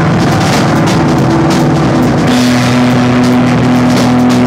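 Rock band playing live in an instrumental passage: the drum kit beats steadily under sustained low keyboard notes. The held notes change pitch about halfway through.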